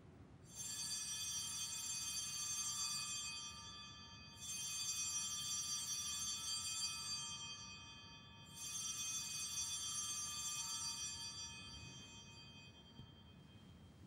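Altar bells rung three times, about four seconds apart, each ring left to fade out; the rings mark the elevation of the consecrated host.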